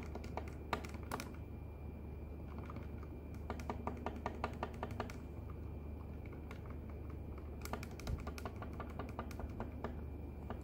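Rapid clicking of the keys of a Casio fx-96SG PLUS scientific calculator as the DEL key is pressed over and over, deleting characters from the entry. The presses come in three quick runs with short pauses between.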